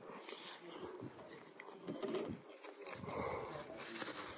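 A man chewing a big mouthful of spinach omelette, with soft, irregular mouth noises.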